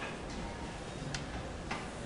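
Chalk on a blackboard as lines are drawn: a few short taps and scrapes, the clearest about a second in and another near the end.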